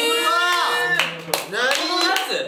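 Excited group voicing a drawn-out exclamation, then a couple of sharp hand claps about a second in as the reaction turns to applause.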